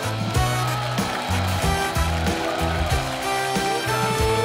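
Live band playing an upbeat pop-rock song: repeated bass notes and drums keep a steady beat, with electric guitar.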